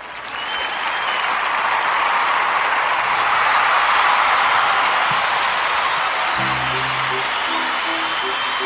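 Applause swelling in over the first couple of seconds and then holding steady. About six seconds in, a short repeating musical riff of low pitched notes starts underneath it.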